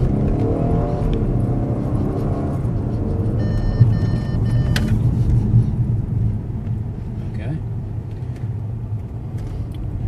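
Car engine accelerating, heard from inside the cabin, its pitch rising for about two seconds over steady road and tyre rumble. Around the middle, an electronic warning tone of several steady notes sounds for about a second and a half: the forward collision warning alert. A sharp click follows it.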